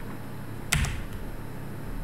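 A single sharp click from the computer controls about three-quarters of a second in, with a fainter tick just after it, over a low steady hum.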